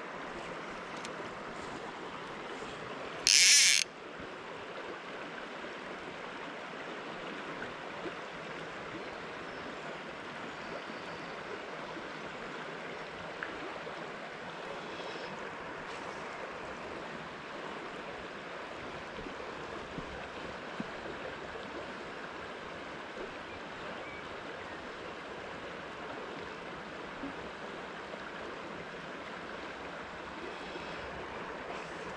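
Steady sound of a river running over a stony bed. About three seconds in comes one loud, short, high rasp lasting about half a second.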